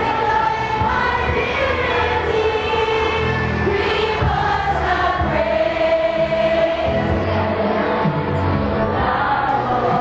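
A group of women singing a song together in chorus, with long held notes and no pauses.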